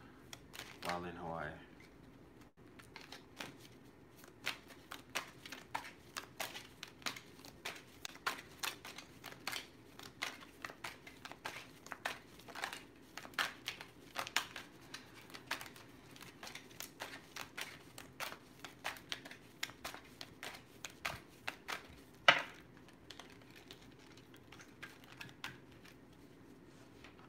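A tarot deck being shuffled by hand: a long run of soft, irregular card clicks and taps, several a second, with one sharper knock near the end.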